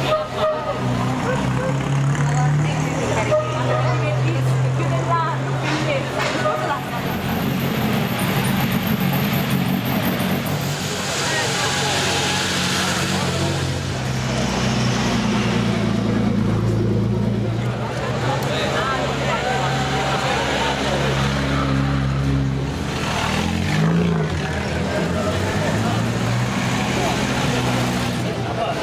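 Vintage cars' engines running at low speed as they pass slowly by, a steady low hum with a brief rev about three quarters of the way in, with a crowd talking.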